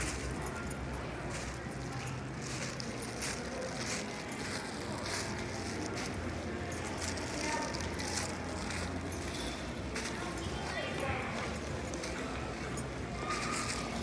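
Indoor shopping mall ambience: indistinct background voices over a steady low hum, with occasional light clicks.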